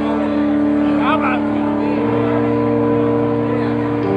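A live band's sustained droning chord of long held notes, which shifts to a new pitch about halfway through. A brief sliding, voice-like sound comes in about a second in.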